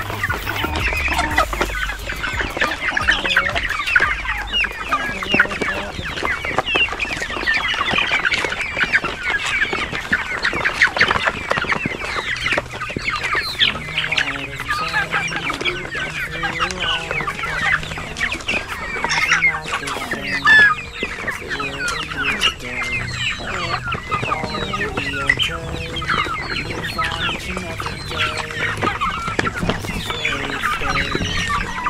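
A large flock of hens and young chickens clucking and chirping without pause while they feed.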